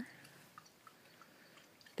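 Near silence: faint outdoor background with a few faint small ticks.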